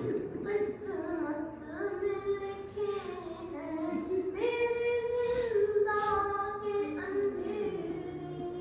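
A boy singing an Urdu noha (mourning lament) unaccompanied, in long held notes that slide between pitches.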